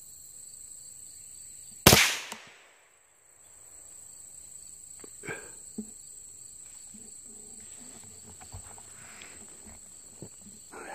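A single sharp rifle shot about two seconds in, with a short ringing tail, over a steady high-pitched drone of insects. A few faint knocks and rustles follow later.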